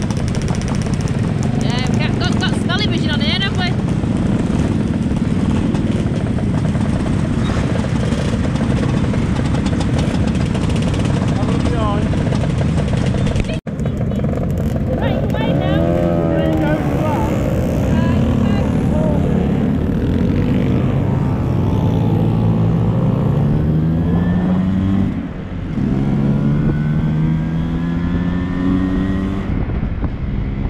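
Several motor scooter engines running close by. Near the end one engine rises in pitch twice as it accelerates, with a short drop between the two rises at a gear change.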